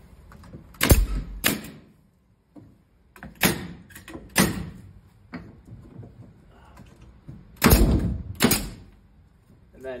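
Pneumatic nailer firing about seven sharp shots into wood, mostly in quick pairs, driving nails through the redwood cross blocks into the obelisk's legs.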